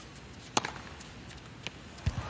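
Tennis ball struck sharply by a racket once, about half a second in, then a fainter knock of the ball about a second later, during a rally.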